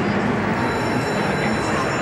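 Amusement-ride machinery giving a high, steady metallic squeal that starts about half a second in, over the dense din of a crowded indoor amusement park.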